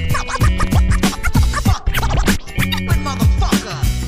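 Hip hop beat with a DJ scratching a record on a turntable over it: quick rising and falling squiggles of pitch over a steady kick-drum pulse.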